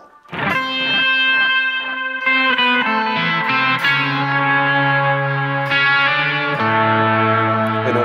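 Electric guitar through effects playing a pentatonic lead phrase over a looped backing. Long sustained notes with wide vibrato, changing pitch a few times, start just after a brief gap.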